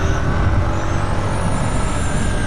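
Honda CG 160 Titan motorcycle riding along a street, its single-cylinder engine running under a heavy rumble of wind on the microphone. A thin high whistle joins about a second in.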